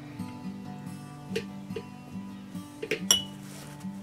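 Soft background music with steady sustained notes, over which come a few small clicks and one sharp metallic clink about three seconds in.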